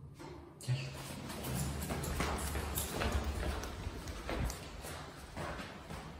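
Footsteps on a hard stairwell and hallway floor, a quick run of steps about two or three a second.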